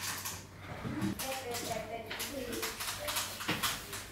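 Faint, indistinct voice-like murmuring with a few light clicks.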